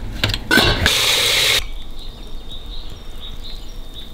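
A few clicks of a ceramic hob's control knob being turned, then a loud hiss lasting about a second.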